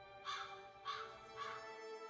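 Three harsh crow caws, about half a second apart, over ambient music with steady held tones and a low rumble beneath.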